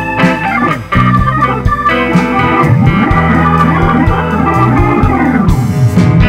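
Hammond-style organ on a Nord Electro stage keyboard playing a solo line over a soul-blues band, with electric bass and drums underneath. The band drops out briefly just before a second in, then comes back in full.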